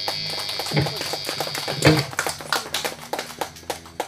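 A live rock band's final held chord, guitars ringing through the amplifiers, closed by a last loud hit about two seconds in. Scattered clapping and a few voices from a small audience follow, thinning out near the end.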